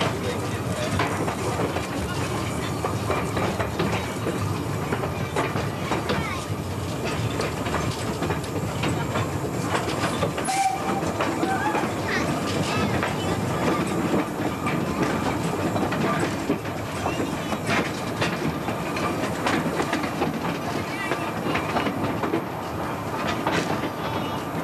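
Small narrow-gauge steam train running along the track, heard from aboard an open passenger coach: the steady rumble and clatter of the coach's wheels on the rails, mixed with the locomotive's running.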